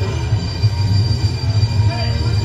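Heavy metal band playing live: loud, droning distorted electric guitars and bass over drums.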